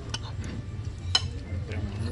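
Small dog eating off a plate: a few short, sharp clicks, the loudest about a second in, over a low steady hum.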